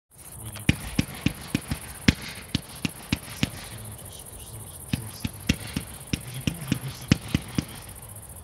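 Xplode XP4650 'Big Desaster' F3 compound firework cake firing its tubes one after another: sharp launch reports about three to four a second, starting just under a second in, with a lull of about a second and a half in the middle before the shots resume.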